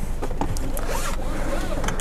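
Cabin noise of a Toyota Aygo 1.0 driving on a dirt track: a steady low rumble of tyres and engine with a rustling road noise over it.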